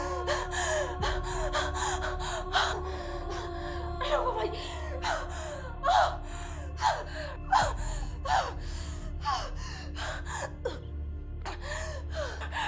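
A person gasping over and over, each gasp sharp and falling in pitch, coming about once a second. Background music with a sustained drone plays underneath.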